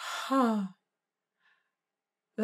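A woman sighing once: a breathy rush of air that turns into a short voiced 'ahh' falling in pitch, over within the first second.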